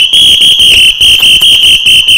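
A sports whistle blown very loudly and shrilly in rapidly pulsing blasts, an irritating sound used to distract and confuse an attacker.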